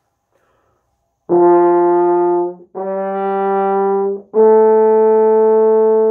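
French horn playing three held notes rising by step: the beginner's first notes, written C, D and E. C is played open, D with one valve, and E open again. The playing starts about a second in, and the third note is the longest.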